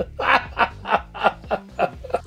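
A man chuckling: a run of short, breathy laughs, about four a second.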